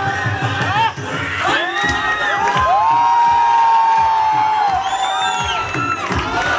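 Voices shouting and whooping in long, arching calls over bhangra music with a steady drum beat; the longest call is held from about two and a half seconds in until nearly five seconds.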